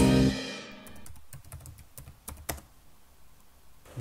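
Guitar music dies away in the first second, followed by a run of irregular, separate clicks of typing on a computer keyboard.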